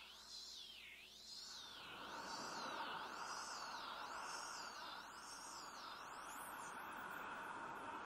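Quiet electronic synthesizer tone, high and thin, sweeping up and down in a steady wave about once a second over a soft hiss.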